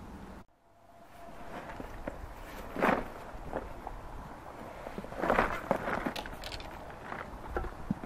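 Footsteps on dry fallen leaves and twigs: a string of irregular rustling crunches, loudest about three seconds in and again around five to six seconds in, after a short silent gap near the start.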